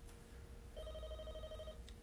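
Telephone ringing tone heard over a phone line: one faint, warbling ring about a second long, starting partway in, over a faint steady hum.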